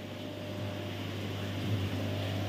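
Steady low hum with a soft even hiss from an aquarium shop's running equipment: tank pumps, filtration and an air conditioner.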